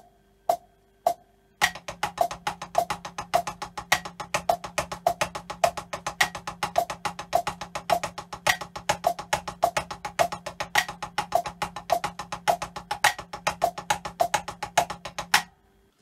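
Drumsticks on a practice pad playing a fast, continuous pattern of double strokes followed by paradiddles, over regular metronome clicks about twice a second. A few lone metronome clicks come first, and the playing starts about a second and a half in and stops shortly before the end.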